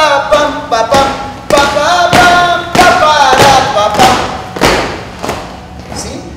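A lively dance tune sung on 'la la' syllables, with a heavy thump a little under twice a second: feet stamping the marching step in time. The singing and stamping grow quieter near the end.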